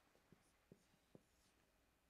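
Faint marker writing on a whiteboard: three soft taps of the pen tip about 0.4 s apart and light squeaks of the felt tip, over near-silent room tone.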